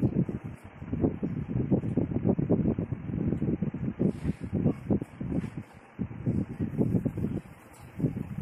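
Muffled voices talking, with a brief hiss about four seconds in.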